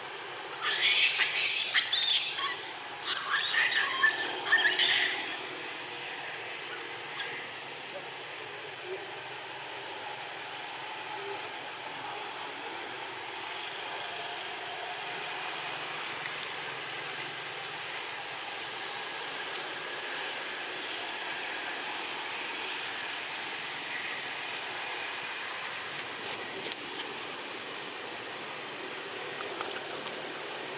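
Monkeys giving a few harsh, high screeching calls in loud bursts over the first five seconds or so, then a steady, quiet forest background.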